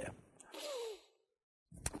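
A man's short, quiet sigh about half a second in, with a slight fall in pitch, followed by dead silence.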